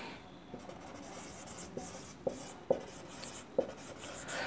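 A marker writing on a whiteboard: faint strokes with a few light, sharp taps of the tip against the board.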